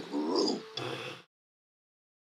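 A man's low, wordless vocal sound lasting about a second.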